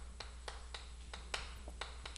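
Chalk tapping against a blackboard as a word is written: a string of faint, sharp clicks, a few a second, over a steady low hum.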